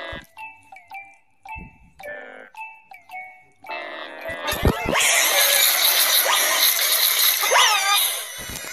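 Pitch-shifted, effect-distorted logo jingle audio: short repeated chime notes with small downward slides. About four seconds in it turns into a loud, dense, harsh wash of layered sound with swooping pitch glides.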